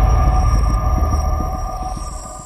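Cinematic logo-reveal sound effect: a deep rumble with steady high tones ringing above it, loudest at first and then fading away.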